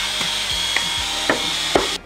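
Cordless drill running steadily with a high whine as it bores an opening into a plastic one-gallon jug, with a few scrapes of the bit on the plastic. It stops suddenly at the end.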